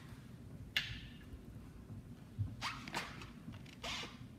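Hands handling a metal valve: a sharp click about a second in, then a few brief, soft scraping and rustling sounds.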